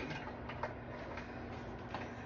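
A few light, irregular clicks and taps as an XLR cable and its connectors are handled and pulled while being untangled, over a faint steady hum.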